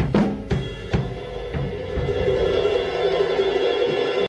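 Drum kit and acoustic guitar playing the closing bars of a ballad, without vocals. There are a few drum strokes in the first second, then a sustained ringing wash that swells slightly toward the end as the song finishes.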